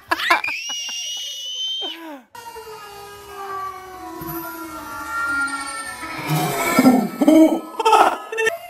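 A toddler's high-pitched squeal, held for about two seconds and dropping at the end. Then soft background music, with toddler giggles and laughter near the end.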